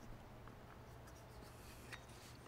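Very faint handling of a handcrafted wooden Karakuri puzzle: light rubbing of fingers and wood on wood as the pieces are tried, with a small click near the end.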